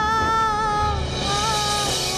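Background music score: a long held note with vibrato, dipping in pitch about halfway through, over low beats about every second and a half, with a hissing swell rising in the second half.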